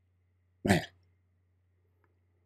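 A man says one short word, "man", about two-thirds of a second in. Otherwise there is only a faint steady low hum.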